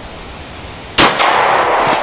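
A single gunshot from a shoulder-fired long gun about a second in, very loud and sharp, followed by about a second of loud rushing noise.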